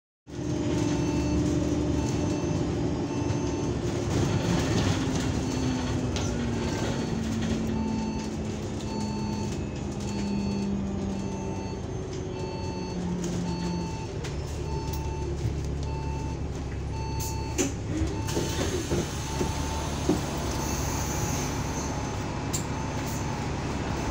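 Inside an Alexander Dennis Enviro500 MMC double-decker bus slowing to a stop, its drivetrain note falling in pitch. A short beep repeats about once a second, then around two-thirds of the way through the exit doors open with clunks and a hiss of air.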